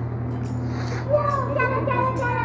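Children's voices chattering in a busy exhibit hall over a steady low hum.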